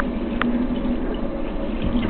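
Kitchen tap running steadily into a stainless steel sink, the stream splashing over a crab held under it. A small click about half a second in.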